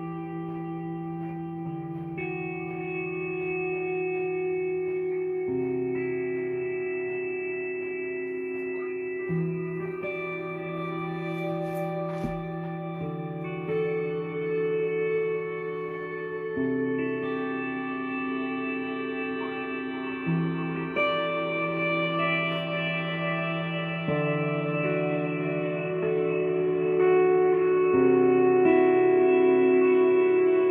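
Electric guitar played through an Electro-Harmonix Cathedral stereo reverb pedal in its Grail Spring mode: long sustained chords that change every few seconds, each washing into a long reverb tail. A brief knock comes about twelve seconds in.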